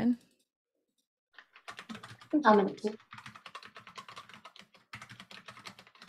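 Computer keyboard typing: quick, irregular keystrokes starting about a second and a half in and running on.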